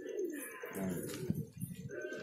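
Several domestic pigeons cooing at once, their calls overlapping.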